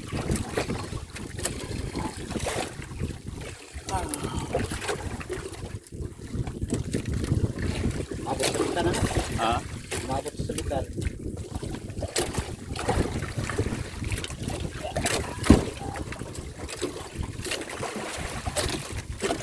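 Wind buffeting the microphone over the wash of the sea, with low voices now and then and one sharp knock a few seconds before the end.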